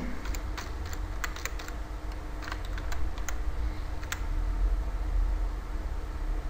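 Typing on a computer keyboard: separate key clicks at an uneven pace, with short pauses between them.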